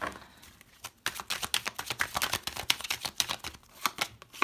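A tarot deck being shuffled by hand: a rapid run of card clicks and flicks that starts about a second in.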